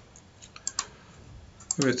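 A few light, separate clicks at a computer, scattered over about a second and a half, with a man's voice starting near the end.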